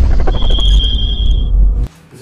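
Logo-intro sound effect: a loud, deep rumble with a steady high ringing tone over its middle, cutting off abruptly just before the end.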